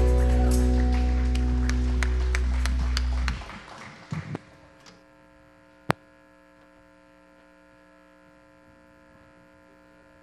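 A worship band's final chord rings out on keyboard and guitars, with a run of light clicks over it, and stops abruptly a little over three seconds in. After that only a faint steady electrical hum remains, with one sharp click about six seconds in.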